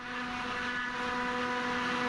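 Steady boat-engine drone under way, an even hum with a rushing noise of water and wind, swelling slowly.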